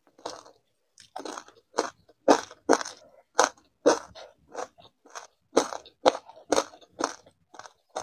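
Close-miked crunching and chewing of a mouthful of grain-coated ice, about two sharp crunches a second.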